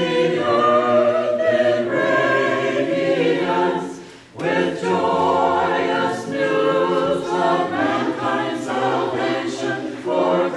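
Orthodox church choir of mixed voices singing a Christmas carol a cappella, with a brief break between phrases about four seconds in.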